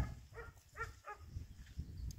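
Three short animal calls in quick succession, about a third of a second apart, over a low rumble of wind and movement.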